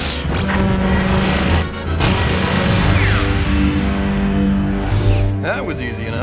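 Action background music with spacecraft sound effects: a rushing noise over the first three seconds or so, then gliding sweeps in pitch near the end.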